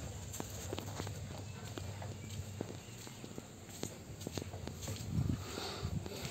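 Footsteps climbing concrete stairs: a run of light, irregular taps, with a couple of low thumps near the end.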